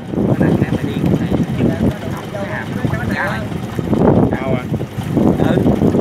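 Men's voices talking and calling out over a steady low rumble.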